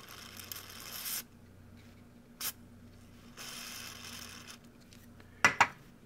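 DeoxIT contact cleaner sprayed from an aerosol can into a rotary wafer switch: two short hisses of about a second each, with a click between them. A few sharp clicks come near the end.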